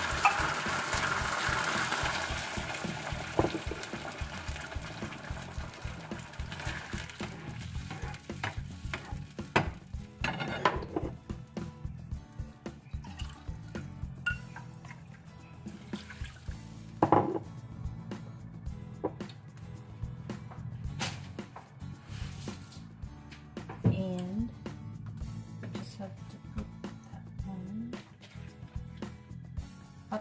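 Water poured from a mug into a frying pan of sardines, a rush of pouring and splashing in the first couple of seconds. After that come scattered clinks and knocks of a utensil and containers against the pan while ingredients are added.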